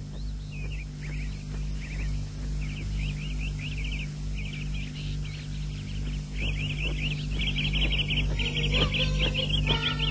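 Cartoon soundtrack of bird chirping: quick repeated chirps and trills, sparse at first and getting busier and louder about six seconds in, over a steady low hum.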